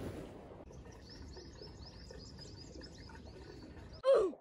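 Faint birdsong: a rapid run of short, high chirps, several a second, beginning a little under a second in, over a low steady background noise.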